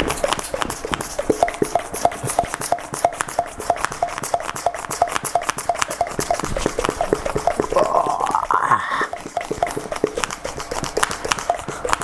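Small handheld ball pump being worked fast into a basketball through an inflation needle: a quick, even train of short squeaky strokes, with a rising tone about two-thirds through. The little pump moves so little air that filling the ball is slow, hard work.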